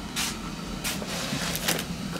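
Thin clear plastic bag crinkling and rustling as it is handled, with two sharper crackles in the first second.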